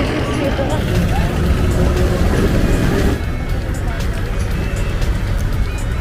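Wind and road noise on the microphone of a moving scooter in traffic, with background music; the noise eases a little about halfway.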